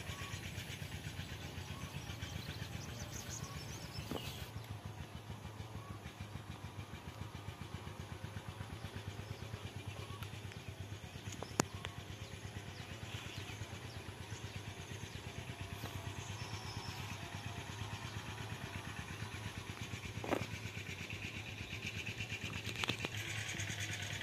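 An engine running steadily with a low, even pulse, with a sharp click about halfway through.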